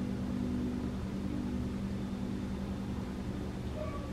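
A steady low hum with a faint droning tone, unchanging throughout.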